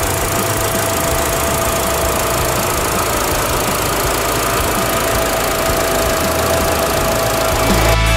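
2021 Mitsubishi L200 pickup's engine idling steadily, heard from the open engine bay.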